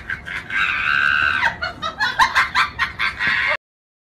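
Chicken sounds on the clip's soundtrack: rapid clucking, one held rooster-like crow about half a second in, then more fast clucks. The sound cuts off abruptly near the end.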